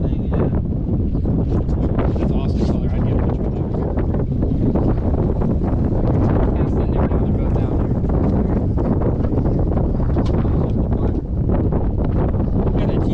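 Wind buffeting the microphone in a steady low rumble, with faint, indistinct voices of people talking underneath.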